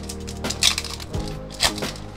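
Foil Pokémon booster pack wrapper being torn open and crinkled, with two sharp crackling tears about half a second and a second and a half in, over steady background music.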